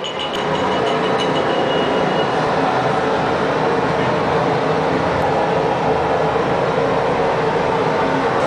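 A loud, steady mechanical roar of machinery running, with a faint high tone dying away in the first two seconds.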